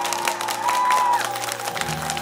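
Studio audience clapping and cheering over the last held notes of a ballad's backing music, as a live song ends.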